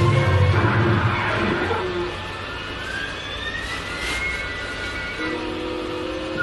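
Cartoon soundtrack playing from a television: orchestral music, loud and low at first, then a slow rising whistle-like glide in the middle and held notes near the end.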